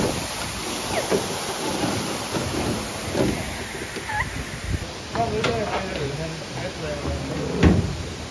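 Waterfall spray pouring and splashing onto the water around a rowboat, a steady rushing hiss, with people's voices in it. A thump near the end.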